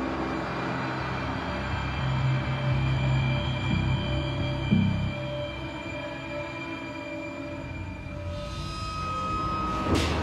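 Suspenseful background score: a low sustained drone with held tones that swells about two seconds in, with a single low hit near the middle before easing off.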